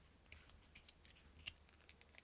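Near silence with a few faint, short clicks and crackles as a cured epoxy resin casting is worked loose from a flexible silicone mould.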